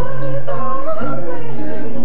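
Male a cappella group singing live into microphones: several voices in held close harmony over a low sung bass note.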